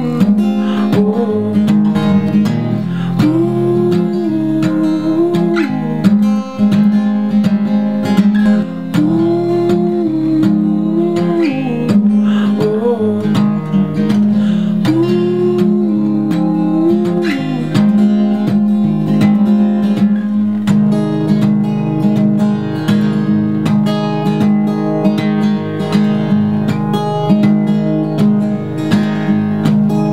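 Takamine cutaway acoustic guitar strummed with a capo, playing steady chords. Over the first half a wordless vocal melody repeats a short rising-and-falling phrase. The guitar then carries on alone.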